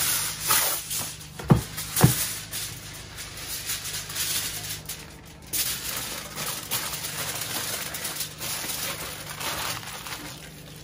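Plastic wrap and aluminium foil rustling and crinkling as they are wrapped around a bag of brown sugar, with two sharp knocks about one and a half and two seconds in.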